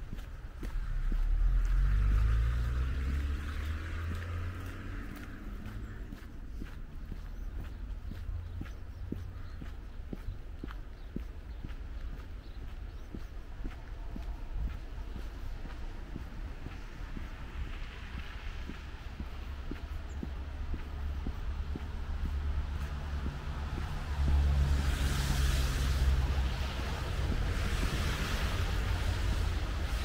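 Winter city street ambience: a vehicle drives past close by about a second in, its engine note rising and falling, over a steady low rumble of traffic and wind on the microphone. A second vehicle passes near the end with a louder hiss of tyres on the wet, slushy road.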